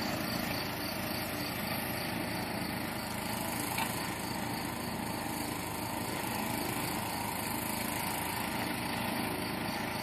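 Steady outdoor background noise with a faint, even chirping about two or three times a second, typical of field crickets.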